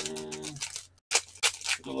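Foil wrapper of a 2020-21 Upper Deck SP Game Used hockey card pack crinkling and tearing as it is ripped open by hand, a quick run of sharp crackles in the second half.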